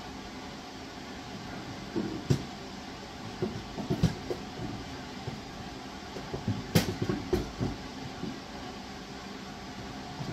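Short knocks and clacks of plastic bead storage cases being handled and set down, in three clusters: about two seconds in, around four seconds, and around seven seconds.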